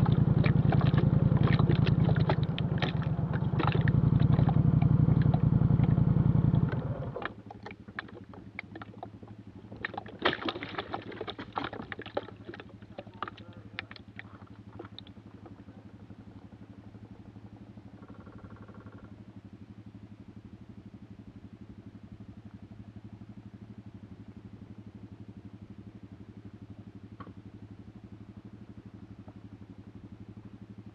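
ATV engine running under throttle, easing off briefly about two seconds in and rising again, then dropping to a steady idle about seven seconds in as the machine stops. A few knocks and clatters come in around ten to fifteen seconds while it idles.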